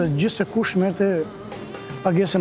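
A man speaking, with a steady held tone of background music under and after his words in the second half.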